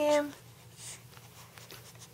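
An adult's high, sing-song baby-talk voice says "I am" with a falling pitch, then stops. After that there is a quiet room with a low steady hum and one faint, brief rustle about a second in.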